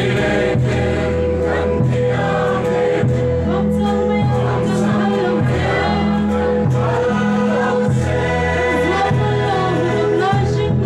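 A crowd of many voices singing a Mizo mourning song together in unison, with acoustic guitars strumming along. The low accompaniment changes note about every second.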